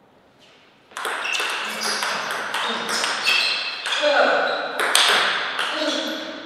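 Table tennis ball struck back and forth in a fast rally, sharp ringing clicks off the bats and table several times a second, starting about a second in.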